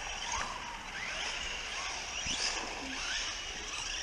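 Faint whine of brushless electric RC cars rising and falling in pitch as they accelerate away over the tarmac, under steady wind noise on the microphone.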